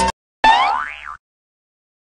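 A cartoon-style 'boing' sound effect: a short springy tone whose pitch swoops up and back down and fades out after about a second, just after a brief noisy burst at the very start.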